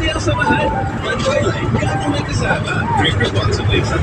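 Steady low rumble of a moving vehicle's engine and road noise, with voices over it.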